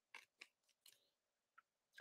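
Near silence, with a few faint clicks of trading cards being flipped through by hand in the first second.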